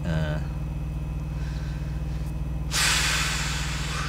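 Steady low hum of an idling truck, then about three seconds in a loud hiss of compressed air being let out, fading over a second or so.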